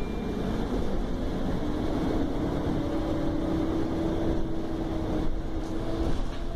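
Bus interior noise while under way: the engine and road rumble running steadily, with a faint steady drive note joining in about two seconds in.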